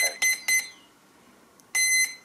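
Electronic beeps from radio-control gear: three short beeps at one pitch in quick succession, then a single longer beep near the end.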